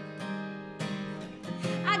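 Acoustic guitar strummed, each strum left ringing. A woman's singing voice comes in near the end.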